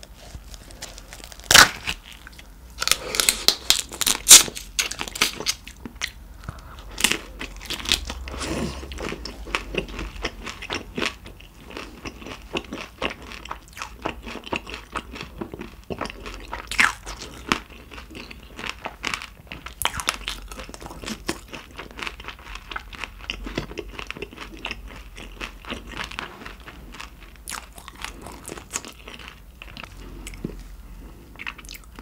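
Close-miked eating of raw carabinero shrimp. It opens with a few seconds of loud, sharp crunches and cracks as the shrimp is torn open, then settles into steady chewing with many small wet clicks.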